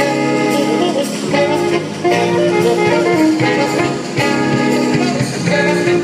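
A small jazz ensemble playing live, with horns and rhythm section going at a steady swing.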